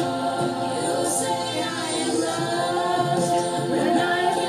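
A woman singing held, sustained notes of a slow song into a handheld toy microphone.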